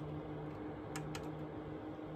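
Goldshell HS3-SE ASIC miner running, its cooling fan giving a steady hum with a low tone. A couple of light clicks come about a second in.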